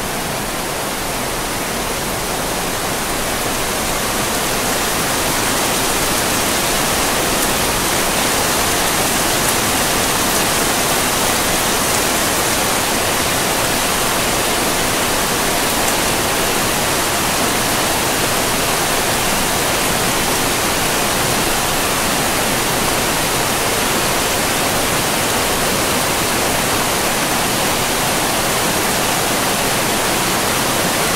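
Steady, unbroken rushing of a large waterfall, growing a little louder over the first six seconds and then holding level.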